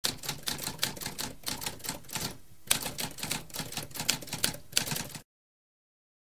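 Typewriter keys clacking in a quick run of strokes, with a short break about halfway through, stopping abruptly about five seconds in.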